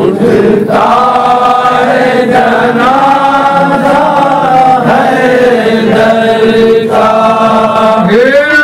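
A man chanting a noha, a Shia lament, through a microphone in long drawn-out sung phrases, the notes held and slowly bending in pitch.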